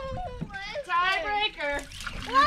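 Speech: high voices talking, with no other sound standing out.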